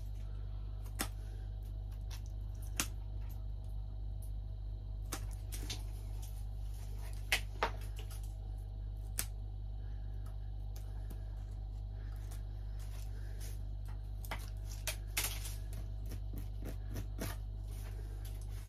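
Bonsai cutters snipping suckers off the trunk of an English oak bonsai: about a dozen short, sharp snips scattered irregularly, some in quick pairs, over a steady low hum.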